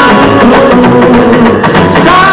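Live rockabilly band playing, with guitar and drum kit, at full volume.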